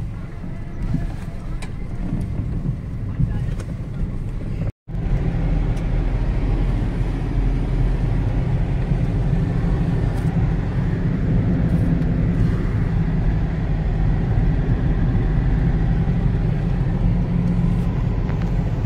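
A car driving along the road, heard from inside: a steady low rumble of engine and tyres. About five seconds in there is a brief drop-out, after which the rumble comes back louder and more even.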